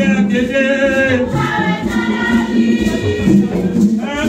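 A group of voices singing together in chorus, loud and steady.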